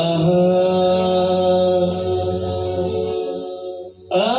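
Live performance of a Bihu song: the lead vocalist holds one long sung note over a steady low band accompaniment. The accompaniment drops out about three seconds in, and the note fades away near the end.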